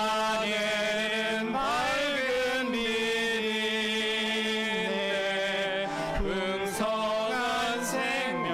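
A man's voice singing a slow hymn through the church sound system, gliding between long held notes.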